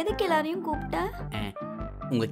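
A child's high-pitched voice talking over light background music with a steady low bass.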